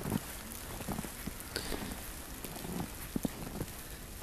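Footsteps crunching in fresh snow: irregular soft crunches and thumps, a few every second, over a steady hiss.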